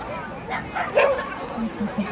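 A dog barking, with a single sharp bark about a second in standing out over the murmur of people's voices.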